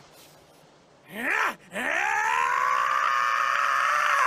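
A cartoon character's male voice strains in a short grunt, then breaks into one long scream that climbs in pitch and holds: an anime power-up yell.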